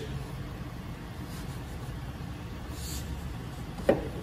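The 2016 Ford F-150's 3.5-litre naturally aspirated V6 idling with a steady, quiet low rumble and no sound of exhaust leaks.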